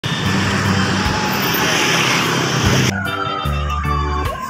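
A truck passing close by, its engine running over steady road noise, for about three seconds. It is cut off suddenly by music with a falling glide.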